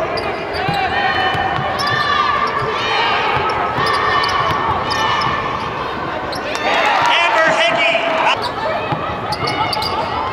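Basketball game court sound in a large arena: the ball bouncing on the hardwood floor, sneakers squeaking in short, repeated high chirps, and voices of players and fans.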